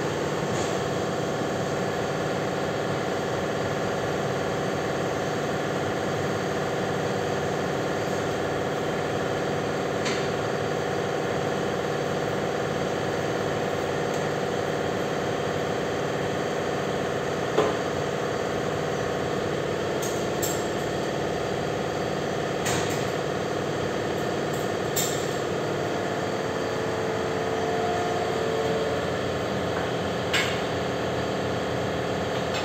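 Steady mechanical hum, as of a running machine or engine, with a few light clicks in the second half.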